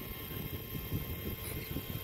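Wind buffeting the microphone: a steady, gusting low rumble.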